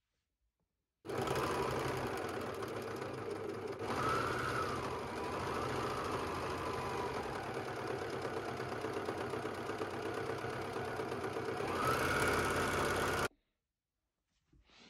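Overlock (serger) sewing machine running at a steady speed, stitching a seam in jersey knit. It starts abruptly about a second in and cuts off abruptly near the end.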